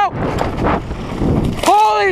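Wind and tyre noise from a mountain bike ridden fast down a dirt trail, with a rider's yell near the end.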